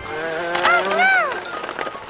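A cartoon character's wordless voice, a couple of rising-then-falling calls like "whoa-oh", over background music.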